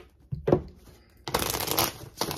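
A deck of tarot cards being shuffled by hand: a couple of short taps about half a second in, then a dense, rapid flutter of cards in the second half.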